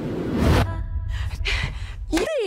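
A woman's sharp, frightened gasp about half a second in, over a deep steady rumble from the trailer's tense sound design. A second, shorter breath comes about a second later.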